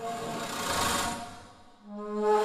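Bass flute played with a heavy, breathy air sound that swells and then fades away. Near the end a low, clearly pitched note comes in and grows louder.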